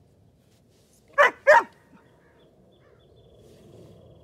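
Border collie barking twice in quick succession, two loud, short barks. This is the excited, over-aroused barking during trick work that the 'sh' cue is meant to quiet.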